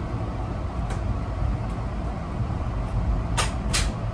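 Steady low rumble of a moving Amtrak passenger car, heard from inside the car. A few short, sharp ticks or creaks from the car cut through: one about a second in, and two close together near the end.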